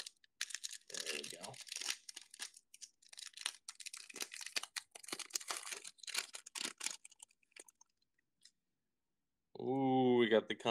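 Upper Deck Series One hockey card pack being torn open by hand and its wrapper crinkled while the cards are pulled out: uneven rustling and tearing for about eight seconds.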